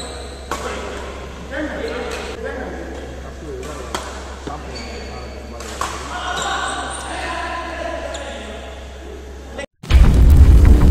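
Badminton racquets striking a shuttlecock during a doubles rally in a large indoor hall: several sharp hits at irregular intervals, a second or more apart, with players' voices calling between them over a steady low hum. The sound cuts out just before the end.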